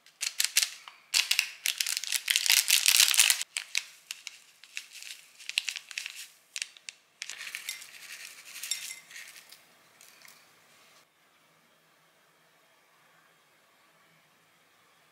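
Thin plastic packet crinkling and rustling in bursts as bonito flakes are shaken out of it, loudest in the first few seconds. Further crinkling and handling noise follows until it stops about eleven seconds in.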